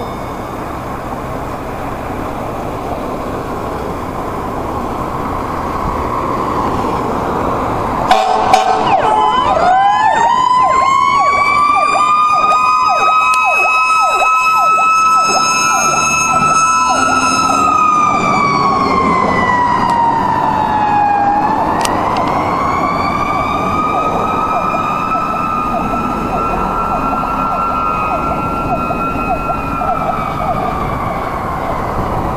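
Fire engine pulling out: its engine rumbles, a burst of horn blasts sounds about eight seconds in, then its siren winds up to a steady high wail, sags over a few seconds and winds up again.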